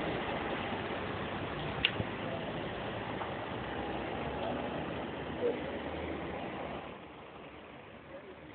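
Bus engines running close by at idle, a steady engine noise that drops away about seven seconds in, with a sharp click about two seconds in.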